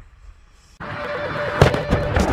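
After a quiet start, loud noise begins suddenly about a second in, and a single sharp blast of a K9 Thunder 155 mm self-propelled howitzer firing comes near the end.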